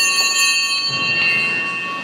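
Altar bells rung during Mass, a bright cluster of high ringing tones that fades through the first second, leaving one tone still sounding. The ringing marks the epiclesis, when the priest extends his hands over the bread and wine.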